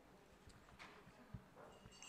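Near silence: faint room tone with a few small rustles and clicks, and one soft low knock a little over a second in.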